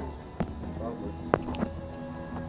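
Two sharp clicks about a second apart, the second louder, with a faint voice briefly between them over a steady low hum.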